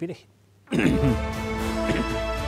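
News segment theme music cutting in suddenly under a second in, with sustained tones over a strong low end.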